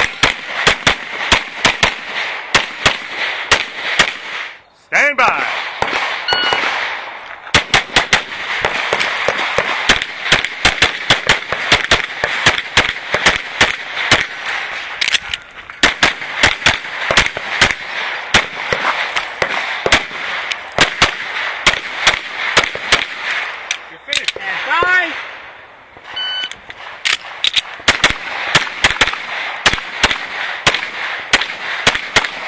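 Open-class race pistol fired in fast strings of shots at steel plates, rapid cracks with short gaps between them. The firing stops twice, once around five seconds in and once near 25 s. Each time a short high beep follows, the signal for the next string of fire.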